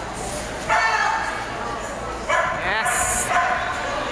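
Dog barking and yipping while running an agility course: two long, high-pitched calls, about a second in and again past the middle.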